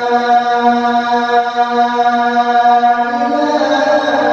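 A man's high voice singing the Islamic call to prayer (adhan) in maqam Rast, holding one long drawn-out note on the line 'Ashhadu an la ilaha illallah'. The pitch steps up slightly just before the end.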